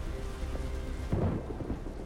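Deep, steady rumble of film soundtrack ambience, with a heavier rumbling swell a little past a second in, under faint held notes of a music score.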